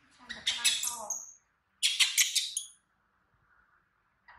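Baby macaque screeching in two loud, high-pitched bursts, each about a second long and half a second apart.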